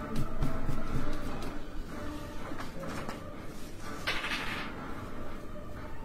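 Dice clattering on a tabletop for a saving-throw roll: a scatter of small knocks and clicks, then a short hiss about four seconds in.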